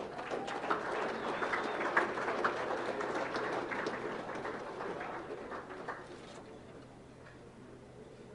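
Audience applause: many hands clapping at once. It sets in straight after the award winner is announced and dies away about six seconds in.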